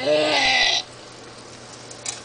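A person's voice gives one short, bleat-like cry, under a second long, its pitch rising at the start and then holding.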